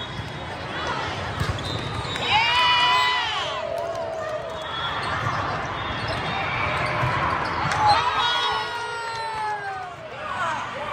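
A volleyball rally on an indoor court: the ball is struck with a few sharp smacks while players and spectators shout and call out, with long falling calls near the end.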